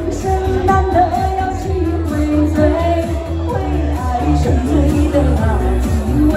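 A woman sings a Chinese pop song into a handheld microphone over a karaoke backing track with a steady bass beat.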